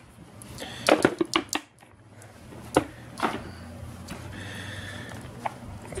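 Plastic clicks and knocks from a Black & Decker Dustbuster hand vacuum being handled and its parts worked: a quick cluster of sharp clicks about a second in, then single clicks near three seconds.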